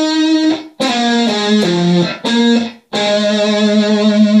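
Gold-top Les Paul-style electric guitar playing a short lead lick: a few separate notes on the fifth and fourth strings high up the neck, then a long held note with slight vibrato from about three seconds in.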